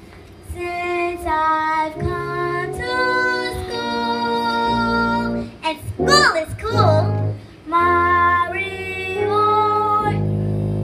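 A young girl singing a melody in held, stepping notes, with a quick swooping vocal run up and down about six seconds in, over a steady instrumental backing.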